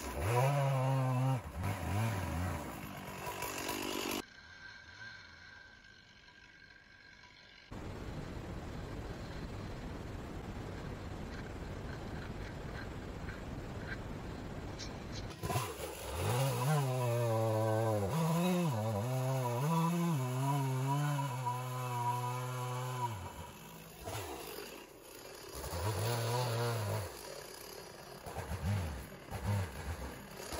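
Gas chainsaw bucking a fallen white oak log, the engine revving up and dropping as the chain bites in repeated bursts. There is a long run of cutting about halfway through, a short quiet gap after the first cut, and a stretch of steady hiss in between.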